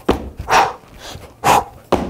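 A man breathing hard after a set of burpees: three loud, breathy exhalations about half a second to a second apart.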